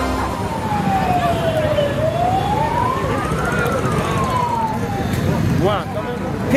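A vehicle siren wailing in slow sweeps, falling, then rising, then falling again in pitch, over the hubbub of a street crowd. A man starts talking near the end.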